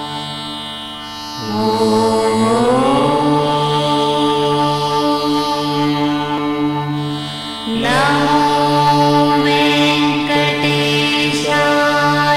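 A voice singing a Carnatic-style devotional chant over a steady drone. Phrases begin about a second and a half in and again near eight seconds, each sliding up in pitch to a held note.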